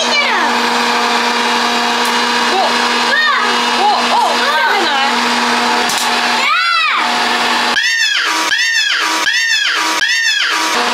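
Electric hot-air popcorn maker running, a steady whirring hum from its fan and heater. From about two-thirds of the way in, a run of about five swooping rising-and-falling tones, roughly two a second, sounds over it.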